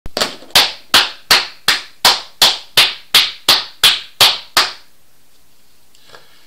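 One person clapping slowly and evenly, about thirteen claps at a little under three a second, stopping about four and a half seconds in.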